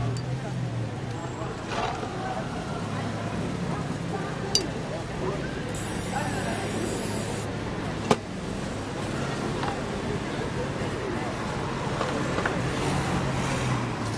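Aerosol spray-paint can hissing for about a second and a half, some six seconds in, with two sharp knocks before and after it. Behind it runs a steady street background of traffic hum and crowd chatter.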